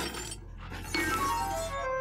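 Crash of roof tiles tipped from a digger's bucket, clinking and shattering, loudest about a second in. Over it runs a quick falling run of musical notes, a comic 'whoops' cue.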